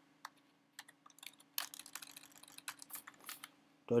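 Typing on a computer keyboard: irregular light key clicks, with a quicker run of keystrokes about one and a half seconds in, as a line of Python code is entered.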